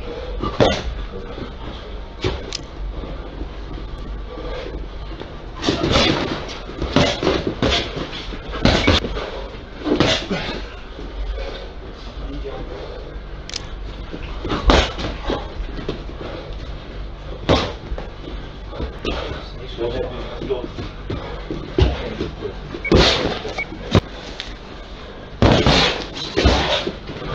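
Boxing gloves landing punches during sparring: irregular sharp thuds and slaps, some in quick pairs or short flurries, over a steady low hum of the gym.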